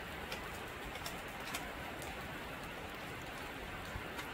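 Heavy rain falling on a sheet metal gazebo roof: a steady hiss, with a few faint sharp ticks in the first half.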